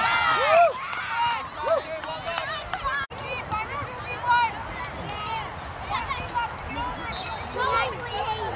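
Children and onlookers shouting and calling out across a soccer field, loudest and most excited in the first second, with a brief drop-out about three seconds in.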